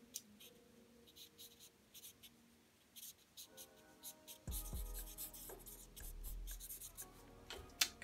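Black felt-tip marker scratching on paper in many short, quick strokes as it shades in a dark patch. Faint background music comes in about halfway through.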